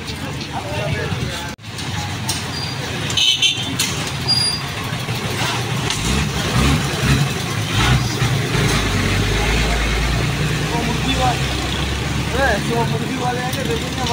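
A motor vehicle's engine running with a steady low rumble that rises in about six seconds in, amid street noise and men's voices.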